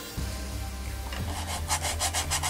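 Stiff bristle brush scrubbing acrylic paint onto a canvas in quick back-and-forth strokes, about five a second. The strokes start near the end, after a quieter moment while the brush is loaded with paint.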